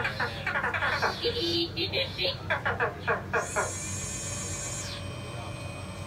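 A person laughing in short, rhythmic bursts among voices, then a high steady hiss lasting about a second and a half, and a faint steady hum near the end.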